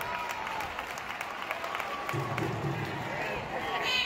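Scattered clapping and crowd voices in a large hall, with a voice speaking over them.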